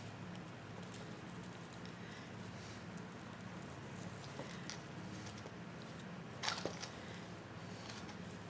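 Burlap ribbon rustling and crinkling faintly as it is handled and folded into loops, with a few small clicks and a short louder rustle about six and a half seconds in, over a steady low hum.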